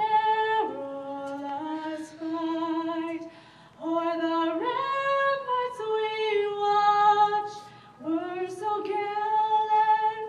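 A woman singing solo without accompaniment: long held notes in phrases, with short breaks about four and eight seconds in.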